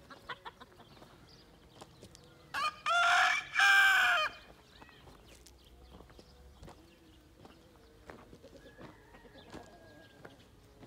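Rooster crowing once, about two and a half seconds in: a short opening note followed by two longer held notes, under two seconds in all. Faint scattered clicks sound around it.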